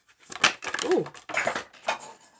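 Tarot cards slipping out of a shuffle and dropping into a cup of tea, a sharp hit about half a second in, followed by a startled "ooh" and a few more clattering, rustling card noises.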